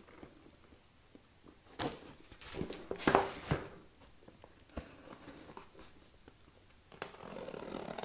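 A small knife slitting the packing tape on a cardboard shipping box: a few short, scratchy tearing strokes, the loudest run about three seconds in and another near the end.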